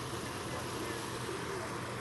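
Steady outdoor background noise with a low, even hum underneath, with no distinct events.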